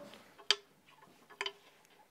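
Two short sharp clicks about a second apart, the first louder, each with a brief faint ring after it.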